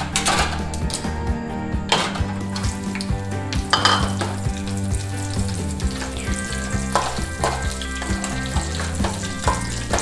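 Raisins sizzling steadily as they fry in a little hot fat in an aluminium kadai, with a slotted metal spoon stirring and scraping against the pan now and then.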